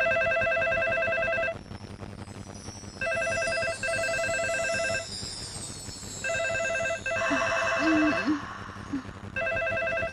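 A telephone ringing with a trilling electronic ring, in repeated bursts of about a second and a half, each followed by a pause of about the same length. Four rings are heard.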